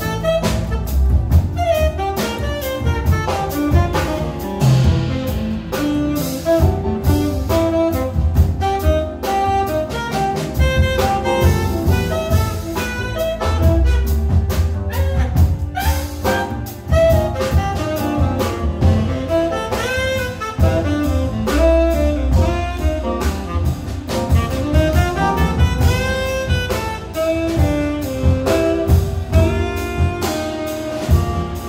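Live jazz band with cello ensemble playing an instrumental passage: saxophone carrying a bending melodic line over bowed cellos, double bass and drum kit.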